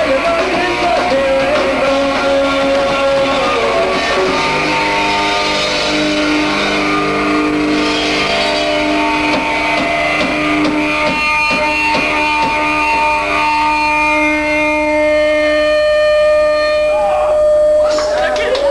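Live punk rock band with electric guitar ringing out in long held notes, one note held on its own near the end.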